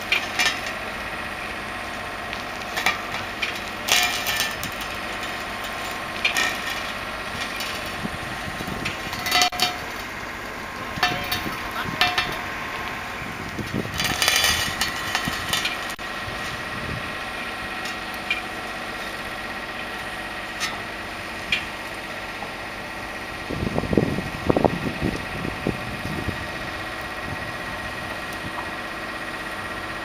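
A diesel engine running steadily at idle, with scattered sharp metallic clanks and squeaks as a railway carriage's wheels roll slowly along steel ramp rails off a low-loader trailer.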